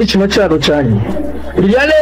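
A man talking in a local language, speech only, with a short lull about a second in.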